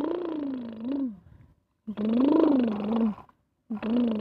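A person imitating an engine with their voice, a buzzing "brrm" that rises and falls in pitch, three times in a row with short breaks, each about a second long.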